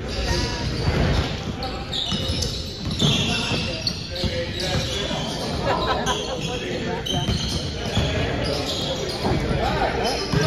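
A basketball bouncing on a hardwood gym floor during play, with players' and spectators' voices in a large gym.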